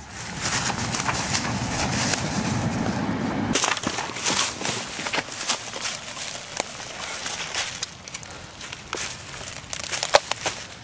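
Footsteps and rustling through dry leaves and undergrowth, with many small crackles and snaps of twigs and leaf litter. A low rumble under the first few seconds stops abruptly.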